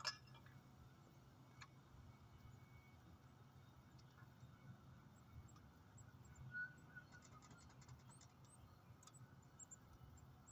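Near silence: faint outdoor ambience with a steady low hum like distant traffic, a sharp click at the start and another a couple of seconds in, and faint short high chirps in the second half.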